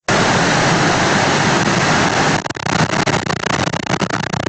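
Loud, even hiss of noise that cuts in abruptly out of total silence. About two and a half seconds in it breaks up into a rapid crackle.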